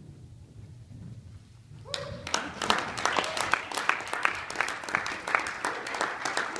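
Spectators clapping and applauding, starting suddenly about two seconds in and carrying on steadily.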